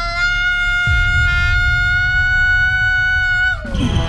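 A child's long, high-pitched scream held on one pitch for about three and a half seconds, falling away near the end. A low rumble comes in underneath about a second in.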